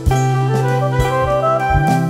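Instrumental jazz-style music: a wind-instrument melody moving note by note over a steady bass, with drum hits.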